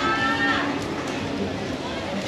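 A drawn-out vocal call, held for a little over half a second at the start, over steady background chatter and noise.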